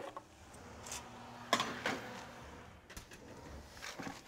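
A baking sheet and oven door being handled: one sharp clunk about one and a half seconds in, with a few lighter knocks and clicks around it.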